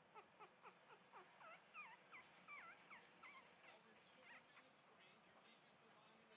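Husky-pug cross puppies whimpering faintly: a quick run of short, high whines, several a second, that stop about four and a half seconds in.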